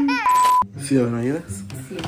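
A man's held, strained vocal sound breaks off into a short steady electronic beep of about a third of a second, a censor-style bleep. Then comes more wavering, groaning vocalising.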